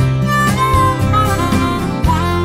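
Instrumental passage of a song: a harmonica plays a short melody with bent, wavering notes over strummed acoustic guitar.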